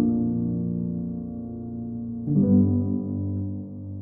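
Solo piano playing a slow, peaceful theme: a held chord fades away, then a new chord is struck a little over two seconds in and left to ring and die away.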